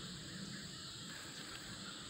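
Faint, steady, high-pitched insect chorus of crickets or katydids, with no separate calls or knocks.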